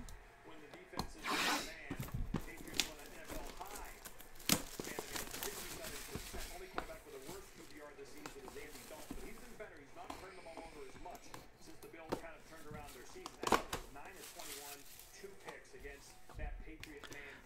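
Plastic shrink wrap on a cardboard trading-card box being slit with a small knife and pulled off: faint crinkling and rustling with a few sharp crackles.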